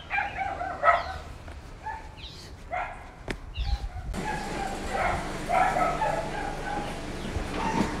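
Dogs barking: a few short barks with pauses between them.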